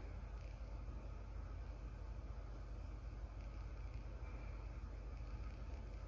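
A steady low hum under a faint even hiss: room tone, with no distinct handling sounds.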